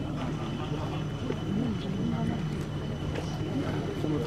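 Indistinct voices, not clearly words, over a steady low hum, with a faint steady high tone.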